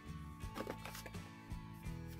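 Soft background music of steady sustained notes. Over it, a short run of rustles and clicks between about half a second and one second in, from a cardboard box being handled.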